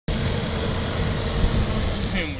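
Minibus driving slowly toward the microphone on a wet road: a steady low engine rumble under a haze of tyre noise.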